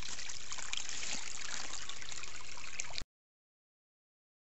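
Creek water trickling and running steadily, cut off suddenly about three seconds in.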